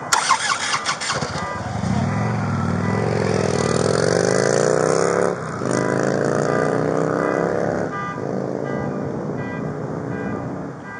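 Police motorcycle engine pulling away and accelerating: its pitch climbs, drops back at a gear change about five seconds in, climbs again, then levels off near eight seconds. A few sharp knocks in the first second.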